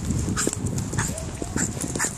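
Small dog on a leash whining in short high whimpers that rise and fall. Irregular taps like footsteps on paving sound about every half second underneath.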